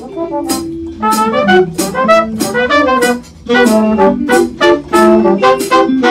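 A horn section of saxophone, trombone and trumpet plays a short, punchy riff together over a drum kit with cymbal hits. There is a brief break about three seconds in before the riff comes back.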